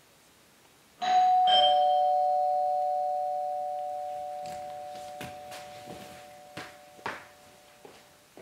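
Two-note ding-dong doorbell chime about a second in, a higher note then a lower one, both ringing out slowly for several seconds. A few faint thuds of movement sound under the fading chime.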